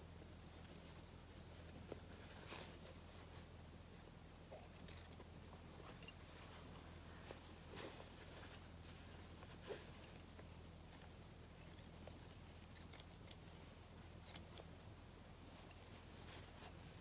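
Small pointed craft scissors snipping fabric scraps: faint, short, scattered snips and clicks, with a quick cluster near the end, over a faint steady low hum.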